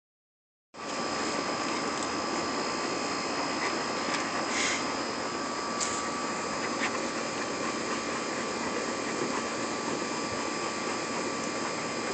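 A steady mechanical whir and hiss with faint unchanging high tones, and a few faint clicks about four and six seconds in.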